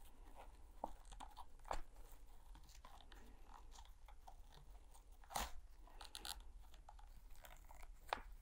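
Faint scattered crackles and rustles of coarse twine being pulled and knotted by hand against a twine-wrapped wooden board, with a sharper crackle about five and a half seconds in.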